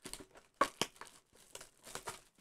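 Plastic shrink-wrap being torn and crinkled off a trading-card blaster box by hand, in a quick run of short crinkles and tears.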